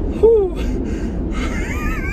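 A man's wordless, excited exclamations: a short falling "whoa" about a quarter second in, then a high, wavering squeal of laughter near the end. Under them, a steady low rumble of road noise in the cabin of an electric Tesla Model Y accelerating hard, with no engine sound.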